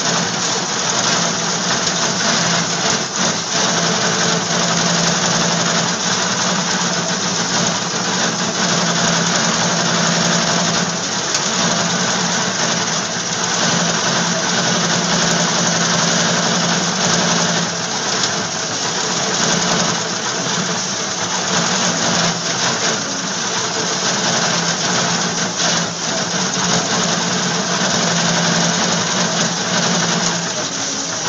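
Steady, loud machinery noise with a constant low hum, dipping briefly a few times.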